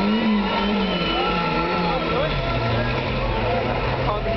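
Car engine revving up and down repeatedly as the car spins doughnuts, its pitch rising and falling several times.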